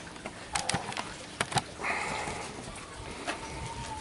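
A bird calling faintly in the background, with a few light clicks and knocks.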